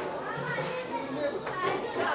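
Background chatter of passers-by, with children's voices among it, moderately quiet and without any one clear close speaker.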